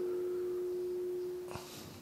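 A steady, single-pitched ringing tone with a faint higher overtone. It holds, then dies away about a second and a half in, with a brief knock and a short breathy rustle as it ends.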